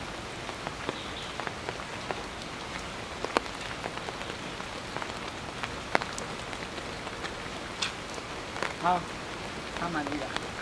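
Steady light rain with scattered sharp drips falling onto wet pavement and leaves.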